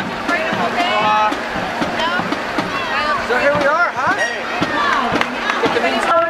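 Many people's voices talking and calling out over one another, with no clear words, some of them high-pitched like children's or raised voices.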